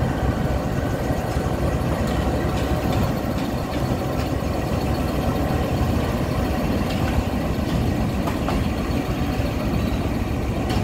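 GE U20C (Pakistan Railways GEU-20 class) diesel-electric locomotive running steadily as it moves a train past, a continuous low engine rumble with a few faint clicks.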